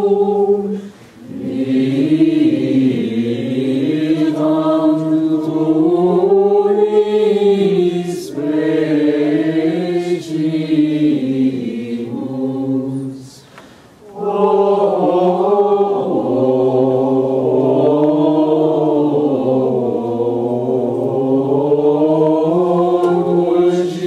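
Sarum plainchant sung in unison by men's voices: a single flowing melodic line in long, melismatic phrases, with short breaks for breath about a second in and again about two-thirds of the way through.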